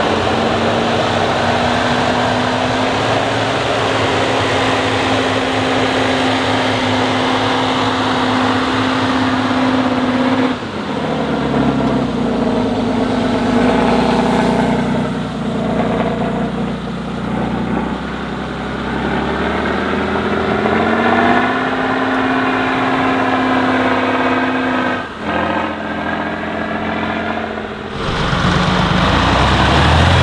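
Heavy 8x8 trial trucks' diesel engines running under load on a rough off-road course: a steady engine note for the first ten seconds, then revving that rises and falls. The sound changes abruptly a few times.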